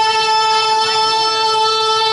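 A voice holding one long, steady high note for nearly three seconds.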